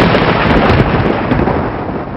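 Thunder sound effect: a loud rumbling crash that slowly fades.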